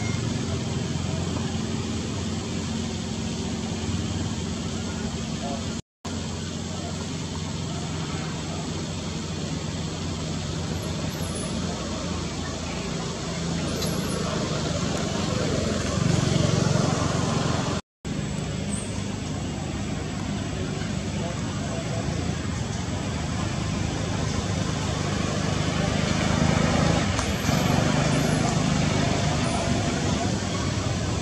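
Steady outdoor background of road traffic with a low engine hum and indistinct voices, cutting out completely for a moment twice.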